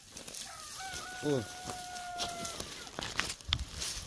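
A domestic fowl crowing: one long, steady call of about two seconds. A few light knocks follow near the end.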